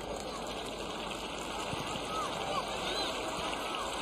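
Steady ambient sound from a football pitch picked up by the broadcast microphones: an even background hiss with a few faint, distant short calls.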